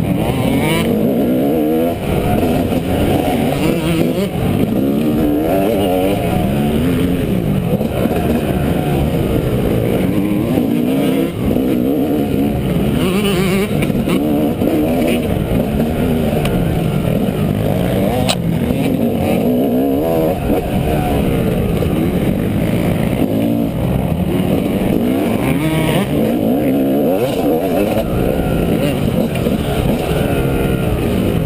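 Dirt bike engine heard close up from a camera mounted on the bike, revving up and down without a break as the bike is ridden hard along a rough trail.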